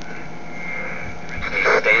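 Panasonic Panapet AM radio playing through its small speaker: static hiss with a steady high whistle during a pause in the broadcast, then a voice comes back in near the end.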